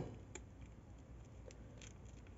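Faint rustling and a few soft clicks of a needle and thread being worked by hand through grosgrain ribbon while making a stitch.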